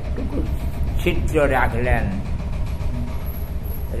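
An elderly man talking in short phrases over a steady low rumble, then pausing for the second half.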